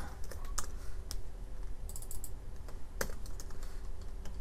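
Computer keyboard keys clicking as keyboard shortcuts are pressed: separate, irregular clicks, a few each second, with a few louder strokes among them.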